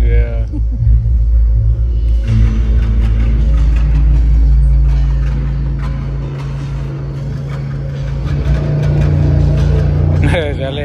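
Show soundtrack over a theatre's sound system: a loud deep rumble with sustained low music notes, the rumble easing about halfway through and building again near the end. A voice is heard briefly at the start.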